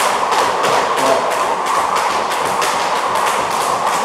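Two speed jump ropes slapping the floor mat with feet landing in high-knee skipping, a quick steady rhythm of about four strikes a second.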